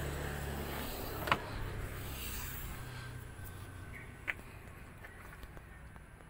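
Two sharp clicks from a Toyota Innova's tailgate latch and rear door being opened, one about a second in and one about four seconds in, over the low hum of the car's idling engine, which fades away.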